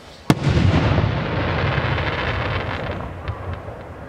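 A 5-inch aerial firework shell bursting: one sharp bang, followed by a long noisy tail that fades over about three seconds.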